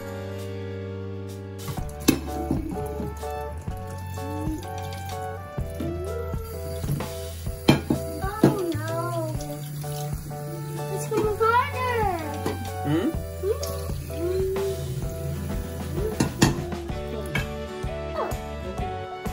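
Background music over a kitchen tap running into a stainless-steel sink while a plate is rinsed under it, with a few sharp clinks of dishes.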